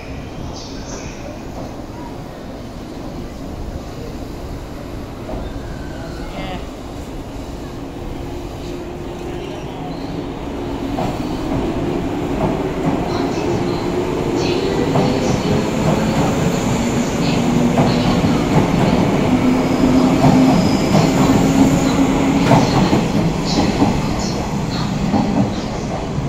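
A JR 185 series electric multiple unit pulling out of a station platform. Its traction motor hum rises in pitch as it gathers speed, and it grows louder through the middle as the cars roll past, with wheel clicks over the track.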